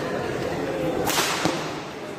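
Badminton racket striking the shuttlecock during a rally: a sharp, whip-like smack with a swish about a second in, followed by a lighter knock shortly after.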